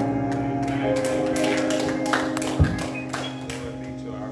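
Piano playing held chords as a song closes, with a run of sharp, irregular taps over it in the middle of the stretch, the loudest about two and a half seconds in.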